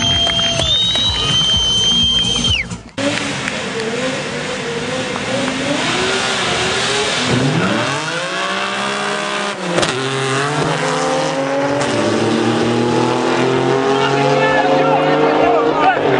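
Drag-racing cars revving hard at the start line, then launching and accelerating away, the engine pitch climbing steadily through the last several seconds. Steady musical tones stop about three seconds in.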